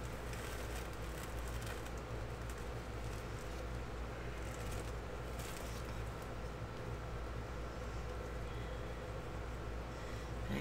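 Steady low room hum with faint, scattered rustling and handling noises as gloved fingers dab and smear wet paint along a canvas edge.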